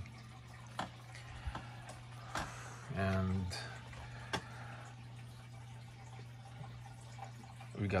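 A steady low hum with a few sharp clicks scattered through it, and a short voiced 'uh' about three seconds in.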